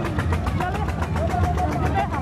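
An engine running steadily: a low hum with a rapid, even ticking of about ten beats a second.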